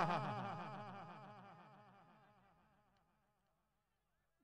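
A commentator's voice over a PA system's echo effect: his last word repeats over and over in quick succession and fades away over about three seconds, leaving near silence.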